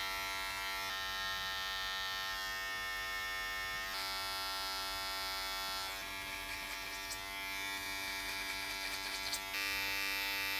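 Electric hair clipper running with a steady buzz while cutting over a comb. The buzz changes pitch a few times and gets louder near the end.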